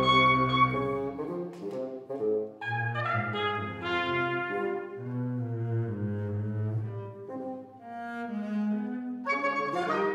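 A baroque orchestra with solo double bass playing a slow passage of held notes and chords, with brass-like tones over the strings and a low bass line; the music briefly thins out about three quarters of the way through.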